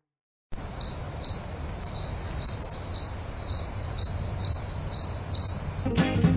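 Crickets chirping as an edited-in sound effect: about ten high chirps at roughly two a second over a low steady rumble, starting suddenly after half a second of dead silence. It is the stock "crickets" gag for an awkward silence.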